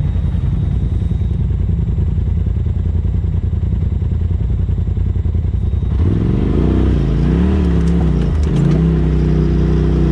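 Polaris RZR side-by-side's engine heard from the cab, chugging at low, steady revs while crawling over rocks. About six seconds in, the sound changes and the revs rise and fall repeatedly under the throttle, with light clatter from the machine working over the rocks.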